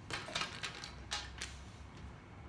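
Plastic felt-tip pens clicking and tapping against one another as they are handled on a table, and a pen cap pulled off: about half a dozen light clicks in the first second and a half.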